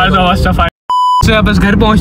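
A short, steady electronic beep of about a third of a second, cut into the talk just after a sudden drop to silence: a censor bleep over a word.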